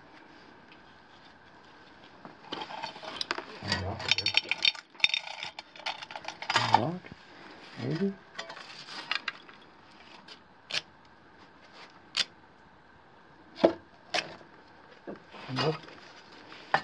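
Hands in work gloves handling old wooden matchsticks and small objects on rock and cardboard: rustling, then a few separate sharp clicks and taps in the second half. A few short murmured voice sounds come in the middle.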